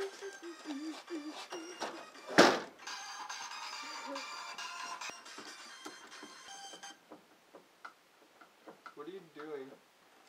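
Indistinct voices, then a single loud thump about two and a half seconds in. After it, electronic music plays for about four seconds and stops, leaving faint voices near the end.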